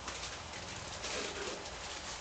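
A faint bird call a little past a second in, over a steady low hiss from a wok of sauce simmering on a lit gas burner.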